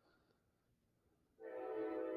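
Near silence, then about a second and a half in a steady held chord of several tones begins.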